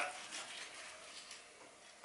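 Faint sounds of a chef's knife slicing through tender, slow-cooked lamb shoulder on a wooden chopping board, otherwise quiet.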